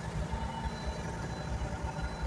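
Semi-truck's diesel engine running, a steady low rumble heard from inside the cab.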